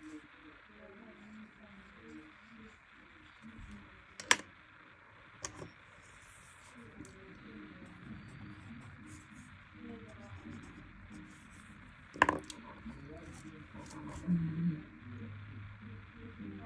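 Quiet desk work with faint voices murmuring in the background and two sharp clicks, one about four seconds in and one about twelve seconds in, from pens and pencils being handled and set down on a wooden desk.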